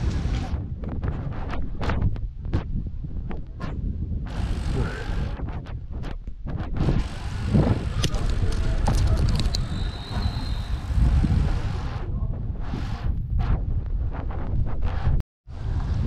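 Wind buffeting the microphone of a camera on a moving road bike, a steady low rumble, with frequent short knocks and rattles from the bike running over a wet road surface. The sound cuts out for a moment near the end.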